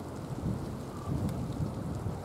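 Wind buffeting the microphone: a low, uneven, gusty rumble.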